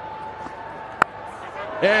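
Cricket ball taking the edge of the bat: a single sharp click about a second in, over low stadium crowd noise.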